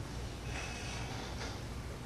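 A man's faint breath drawn in through the nose at the microphone, about half a second in, over a steady low hum and hiss.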